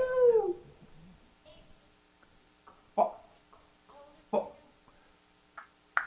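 Vocal tics of a young man with severe Tourette syndrome, untreated with the wrist stimulation off: a short gliding vocal sound at the start, then two brief sharp vocal outbursts about three and four and a half seconds in, heard through a conference room's speakers.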